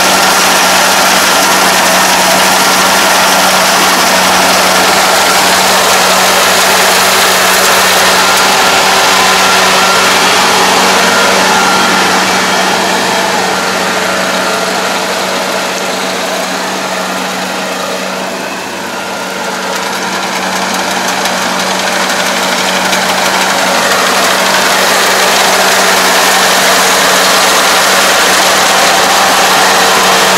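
Kubota ARN460 combine harvester's diesel engine and threshing machinery running steadily with a constant drone while it cuts rice. It fades as the machine moves away to its quietest a little past the middle, then grows loud again as it comes back close near the end.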